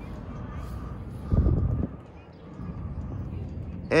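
A brief low rumble on the microphone about a second and a half in, over steady faint outdoor background noise.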